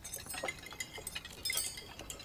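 Many small clinks of cutlery against plates and glasses from diners eating at a long feast table, scattered and overlapping.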